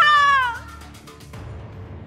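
A single high, drawn-out cat-like cry that slides up and then falls away within the first half second, over background music.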